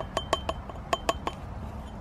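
Light glassy clinks of a plastic soil-sampling tube tapping against a small glass sample jar as the soil core is knocked into it, in two quick runs of three or four taps with a brief ring after each.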